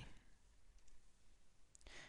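Near silence: faint room tone with one or two faint clicks.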